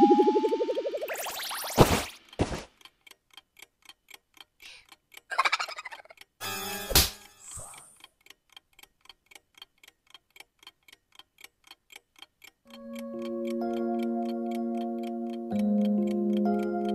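Cartoon sound effects: a rising springy boing and a thud, then a wall clock ticking at an even pace for about ten seconds, broken by a short rattling burst and a sharp smack of hands slammed on a desk about seven seconds in. Soft sustained music chords take over near the end.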